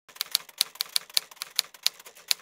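Typewriter keys clacking in a quick, even run of sharp strikes, about four to five a second: a typewriter sound effect laid over title text being typed out or erased.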